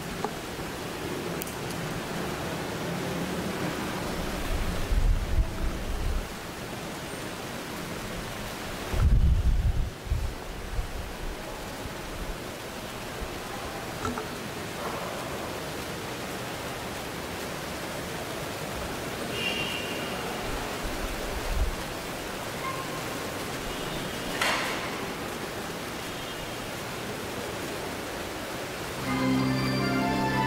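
Steady hiss of an open microphone, with brief low rumbles about five and nine seconds in. Music starts just before the end.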